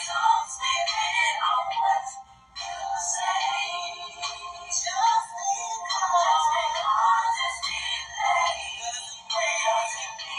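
A song with singing playing in the background, thin-sounding with almost no bass, with a brief break about two and a half seconds in.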